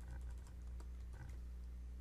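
Computer keyboard typing: a run of irregular key clicks as a short shell command is entered. A steady low hum runs underneath.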